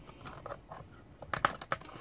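Light metallic clicking and scraping of a hand tool against the slackened bar and chain of a Stihl MS361 chainsaw, with a quick run of sharper clicks in the second half.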